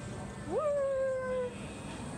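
A person's voice making one drawn-out, meow-like cry about a second long, rising sharply and then sliding slowly down in pitch, over the low hum of the store.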